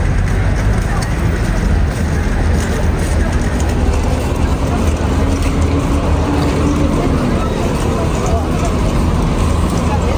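Busy street ambience: crowd chatter from many people walking, over a steady low rumble of vehicle and bus engines, with a low engine hum that fades out about seven seconds in.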